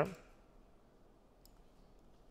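Quiet room tone with one faint, short click about one and a half seconds in, from the computer as a block of code is selected and copied.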